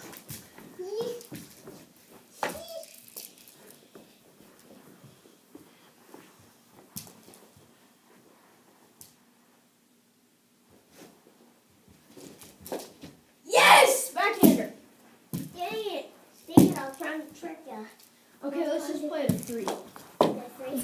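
Children's voices, with shouts and calls that get loudest in the second half. In the quieter stretch between them come scattered light knocks of mini hockey sticks during a knee hockey game.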